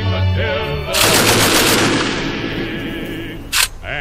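Music breaks off about a second in for a burst of rapid machine-gun fire that lasts about two and a half seconds and dies away, followed by a single sharp crack shortly before the end.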